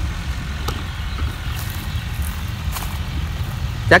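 A farm tractor's engine running steadily while ploughing a dry field, a low rumble heard from a distance.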